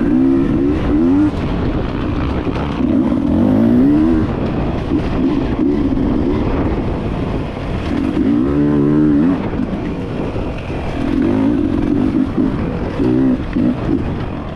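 Enduro motorcycle engine being ridden hard over a dirt trail, its pitch climbing and dropping again and again as the throttle opens and closes and the gears change.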